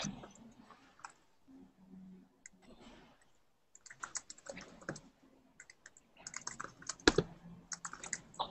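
Typing on a computer keyboard: quick runs of key clicks in several bursts with short pauses between them, the loudest keystrokes near the end.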